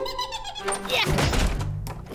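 Cartoon sound effects: a series of soft thunks and thuds over background music.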